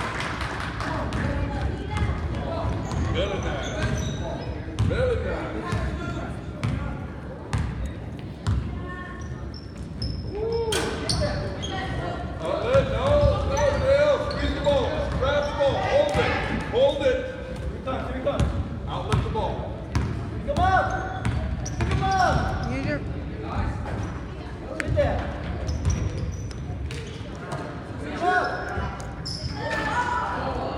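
Basketball being dribbled and bouncing on a hardwood gym floor, with many short knocks echoing in a large hall, mixed with indistinct voices of players and spectators.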